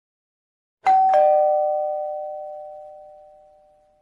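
Two-note ding-dong chime sound effect of a notification bell, like a doorbell: a higher note about a second in, then a lower note a moment later. Both ring out and fade over about three seconds.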